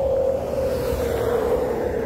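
A vehicle passing on the highway: a steady hum that slowly drops in pitch over a low rumble.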